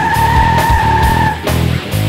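Rock music interlude: a heavy bass-and-drum backing with a high lead electric guitar note held for about the first second and a half, then the band carries on.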